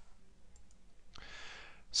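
A quiet pause with a few faint clicks about half a second in, then a soft breath drawn in just before speaking resumes.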